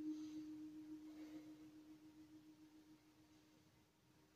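Near silence with a faint, steady single-pitched hum that fades away over the first three seconds.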